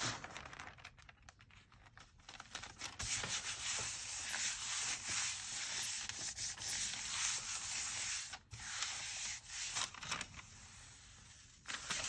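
Hand rubbing a sheet of rice paper down onto a gel printing plate, a steady dry rubbing that goes on for several seconds to lift the paint into the paper. Just before the end the paper starts to be peeled off the plate.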